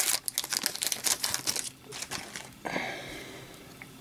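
Plastic wrapper of a freshly opened hockey card pack crinkling and the cards rustling as they are pulled out and handled, a dense run of sharp crackles for the first second and a half, then a softer, steadier rustle.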